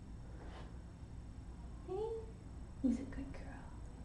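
A woman's soft wordless vocal sounds, a short rising murmur about two seconds in and a brief low 'hm' about a second later, over a quiet steady room hum.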